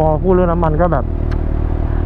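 Kawasaki Ninja H2's supercharged inline-four idling with a steady low hum.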